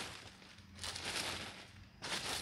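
A small hoe scraping and stirring loose soil and leaf litter, with one longer stretch of scraping in the second half.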